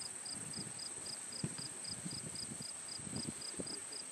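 Insects singing in a continuous chorus: a steady high-pitched trill with a second, lower chirp repeating about four times a second. A single soft knock comes about one and a half seconds in.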